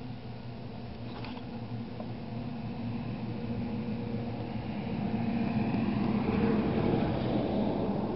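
A steady low engine hum, with vehicle noise swelling to its loudest about three-quarters of the way through and easing off slightly at the end.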